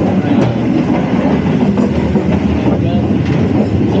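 Passenger train in motion, heard from inside the carriage: a steady, loud rumble and rattle of the wheels and running gear on the track.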